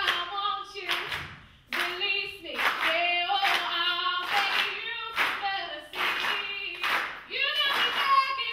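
Voices singing a melody over hand-claps keeping the beat, about one clap a second.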